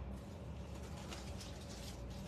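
Low steady room hum with faint small ticks and rustles from something being handled.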